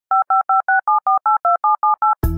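Touch-tone telephone dialing: a quick run of about ten short dual-tone keypad beeps, roughly five a second, the pair of pitches changing with each digit.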